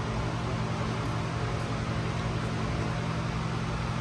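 Steady background hum and hiss, like fans or air-handling machinery, with no distinct events.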